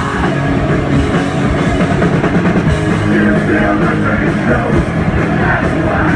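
Punk rock band playing live, loud and steady, with electric bass and a driving drum kit.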